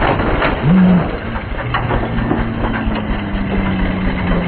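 The motor of a small motorized cart running as it drives across packed snow, with crunching and knocks from the wheels and frame. Its steady low hum settles in about halfway through. A short, loud rising tone comes just under a second in.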